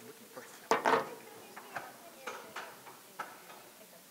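A roomful of people moving about among folding chairs: a sharp clatter about a second in, then scattered knocks and clicks, over low murmuring voices.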